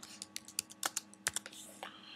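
Computer keyboard keys clicking as a short name is typed: a quick, irregular run of about a dozen keystrokes.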